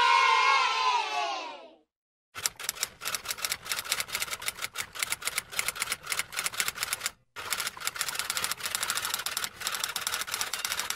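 The tail of a crowd cheering "yay" falls in pitch and fades out in the first two seconds. Then a typewriter types in rapid strings of keystrokes, in two runs with a brief pause about seven seconds in.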